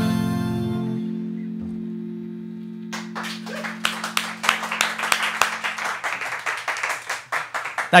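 A live band's final chord ringing out and fading away over the first few seconds, then a small group of people clapping from about three seconds in.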